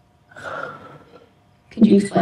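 A woman's breathy gasp of shock, lasting under a second, followed near the end by her voice breaking out loudly as she starts to exclaim.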